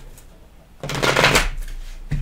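A tarot deck shuffled in the hands: a short burst of card rustling about a second in, lasting around half a second and trailing off.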